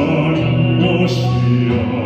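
A baritone singing a Korean worship song into a microphone over instrumental music, with long held notes.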